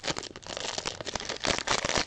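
Foil trading-card pack wrapper crinkling and tearing as hands pull it open, a dense run of crackles that grows louder near the end.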